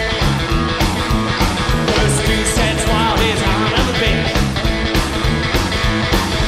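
A rockabilly trio playing live: upright double bass, hollow-body electric guitar and drums at a fast, steady beat.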